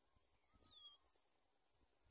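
Near silence with one faint, short bird chirp sliding down in pitch a little over half a second in, over a faint steady high-pitched drone.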